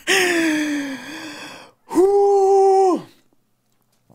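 A person's drawn-out non-word vocal reaction. First a breathy exclamation falling in pitch, then, about two seconds in, a loud held note lasting about a second.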